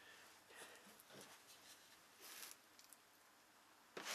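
Near silence, with a few faint, soft scrapes of a putty knife working thick carpet adhesive.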